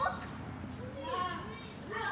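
Children's voices at play, with one child's short high-pitched call about a second in, over a low background murmur.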